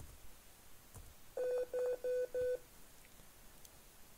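Linux `beep` command sounding the PC speaker: four short, identical 500 Hz beeps in quick even succession over about a second. The pcspkr driver is now loaded and the beep works.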